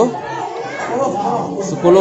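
Several people chatting at once, overlapping voices with no single clear speaker.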